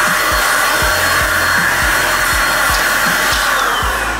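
A small corded handheld power tool running with a steady, loud, hair-dryer-like whir that switches on abruptly. Near the end the pitch falls as it winds down.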